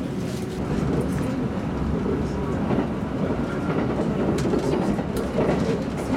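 Kintetsu limited express train running at speed, heard from inside the passenger car: a steady rumble of wheels on rail, with a few sharp clicks as it passes over rail joints and points.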